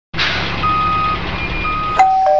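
A truck's reversing alarm beeping twice, each beep about half a second long, over the steady noise of the truck's engine.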